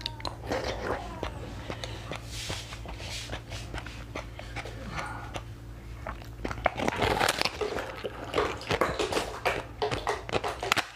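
Close-up mouth sounds of eating frozen basil-seed ice: crunching and chewing with short crackles. The crackling grows busier and louder about seven seconds in, as the ice shell is bitten directly.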